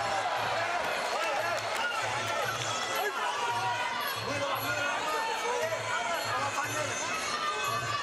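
Muay Thai fight music (sarama): a wavering pipe melody over a steady drum beat of about two strokes a second.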